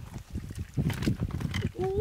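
Hands working through wet mud and shallow water: a quick, irregular run of wet squelches and slaps, busiest in the second half.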